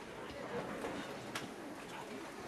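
Low murmur of voices in a hall, with one sharp click about a second and a half in; no instruments are playing.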